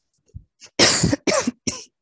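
A woman coughing: a short run of three coughs starting about a second in, the first the loudest.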